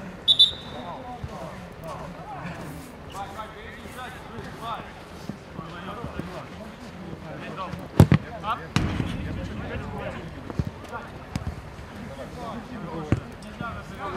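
Football kicked hard on an outdoor pitch, a sharp thud about eight seconds in followed by a second, duller thud, with a few lighter kicks later, over players' voices calling across the pitch. A brief high-pitched squeak sounds just after the start.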